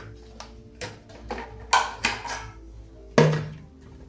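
Empty plastic bottles knocking and clattering against each other and the counter as they are moved about and their caps taken off: about half a dozen sharp knocks, the loudest near the end. Soft background music runs underneath.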